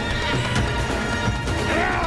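A horse whinnying near the end over galloping hooves and background music.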